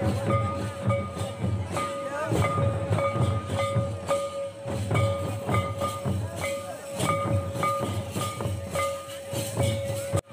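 Live Santal dance music: large kettle drums (dhamsa) and other drums beaten with sticks in a steady, driving rhythm, with a held high tone running over the beat.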